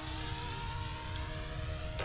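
YUXIANG F09-S electric RC helicopter flying at some distance: a steady whine from its motor and rotors, a few held tones over a light hiss.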